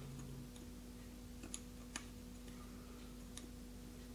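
X-Acto hobby knife blade scraping moulded detail off a soft plastic model part: a few faint, sharp ticks as the blade catches, over a steady faint hum.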